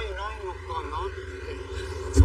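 A man talking over a low, steady rumble of road traffic.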